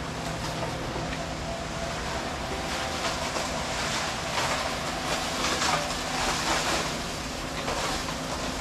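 Portable drum concrete mixer running, its motor humming steadily while bagged concrete churns and grinds in the turning drum, with louder gritty scraping swells in the middle.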